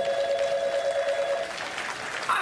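A telephone ringing: one long ring of a rapidly trilling tone that stops about one and a half seconds in.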